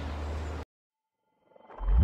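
Steady low outdoor background noise that cuts off abruptly to dead silence, then a low rumbling swell that rises near the end and leads into background music: an edit between shots.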